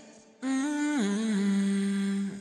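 A singer humming one held note that starts about half a second in, steps down in pitch about a second in, and is then held.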